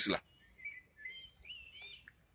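A small bird singing faintly: a string of short whistled chirps that rise and fall in pitch, following the last word of a man's speech.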